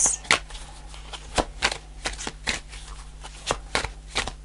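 A deck of oracle cards being shuffled by hand, the cards snapping against each other in short, irregular clicks, about two or three a second.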